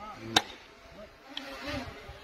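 Pickaxe striking hard, stony earth with a single sharp impact, followed about a second later by a much fainter knock.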